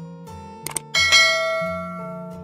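Subscribe-button animation sound effects over background acoustic guitar music: two quick clicks, then about a second in a bright notification-bell ding that rings on and fades.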